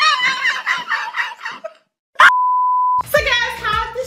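A high-pitched yelling voice, then a brief gap and a single steady beep tone lasting under a second about two seconds in. Voices over music follow near the end.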